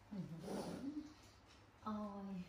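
A woman's voice making short wordless sounds: a breathy one lasting about a second near the start that slides up in pitch, then a steadier held note starting near the end.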